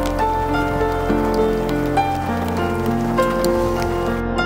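Slow background music with sustained notes, laid over the sound of rain falling on shallow water.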